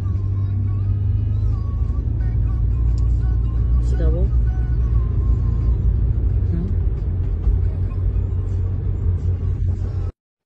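Steady low rumble of a car's cabin: engine and road noise heard from inside the car, with faint wavering tones above it.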